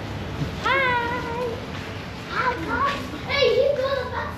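Young children calling out in high voices: one long call about a second in, then shorter calls and squeals.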